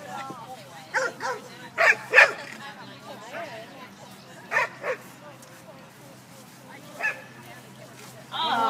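A dog barking in short, sharp yips, mostly in quick pairs, four times over a few seconds, with a last single bark near the end.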